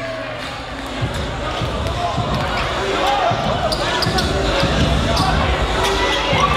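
Basketball game on a hardwood gym court: the ball bouncing as it is dribbled, with short sneaker squeaks about two and three seconds in.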